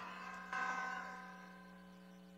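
A faint pause in the speech: a low steady hum, with a faint ringing tone that starts about half a second in and fades away, leaving near silence.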